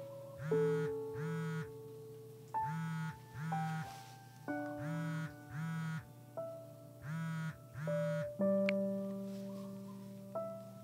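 Mobile phone ringing with a trilling double ring. Four pairs of rings come about two seconds apart, then stop a little after eight seconds in. Soft piano music with held notes plays under it.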